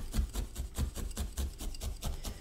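Felting needle stabbing rapidly into wool on a fabric-covered felting cushion, about six light stabs a second, each a soft thump with a scratchy rasp of fibres.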